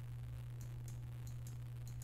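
Quiet room tone with a steady low electrical hum and faint, quick ticks recurring a few times a second.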